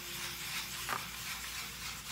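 A brush stirring watered-down ceramic glaze in a plastic bowl: a soft, steady scraping hiss, with a small tick about a second in.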